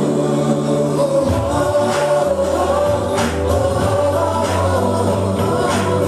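Hindi children's song: a chorus of voices singing over a backing track with steady bass notes and a beat roughly once a second.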